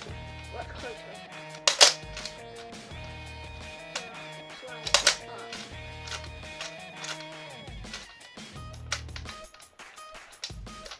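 Background music with a steady beat, cut by two sharp plastic clacks about three seconds apart from a Nerf Zombie Strike Flipfury blaster's mechanism being worked by hand.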